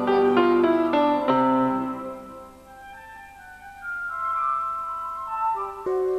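An electronic keyboard being played by a young child: a run of notes for about two seconds, then softer long held tones, with new notes starting near the end.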